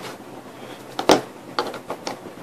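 Handling noise at a desk: one sharp knock about a second in, followed by two or three lighter clicks, as objects are moved or set down.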